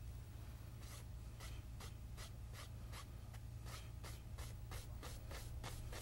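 Faint scratch of a paintbrush stroking oil paint onto a stretched canvas: a run of short, even strokes, about three a second, starting about a second in.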